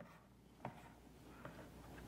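Near silence: room tone, with two faint ticks of magnetic counters being moved and set down on a tactics board.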